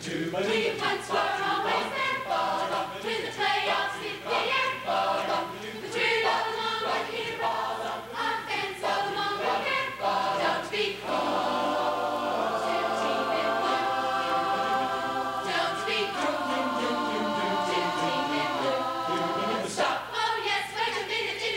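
Large choir singing together, word by word for the first half, then holding long sustained chords until just before the end.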